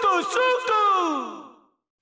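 The closing phrase of an old Hindi film song: a singer's voice with quick pitch bends ends in a long downward slide that fades out.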